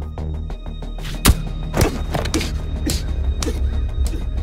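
Tense film score with a steady low drone. About a second in comes a sharp, heavy thud, the loudest sound here, followed by three or four more thuds roughly every half second.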